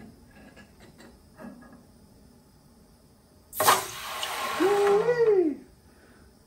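A freshly cast, still-hot silver bar quenched in a pan of water: a sudden loud sizzling hiss lasting about two seconds, with a short rising-then-falling whine near its end. A few faint clicks of the tongs come before it.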